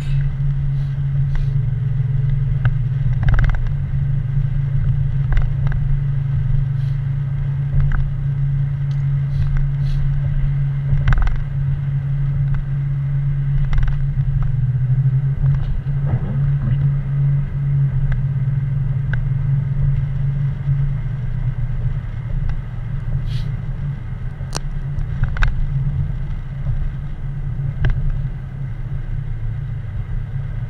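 A car driving on a wet road, heard from inside the cabin: a steady low drone of engine and tyres, with scattered faint ticks.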